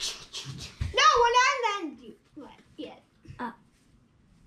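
A child's voice making a wordless, drawn-out sing-song call that falls in pitch at its end, followed by a few short, fainter sounds.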